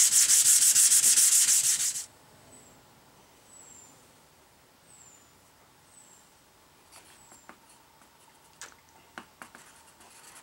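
Hand scuffing of a plastic pickguard sheet with abrasive paper: rapid, even back-and-forth rubbing strokes that stop suddenly about two seconds in, roughing up the surface so super glue will bond. The rest is quiet, with faint small clicks and taps in the second half as super glue is squeezed from its bottle onto the sheet.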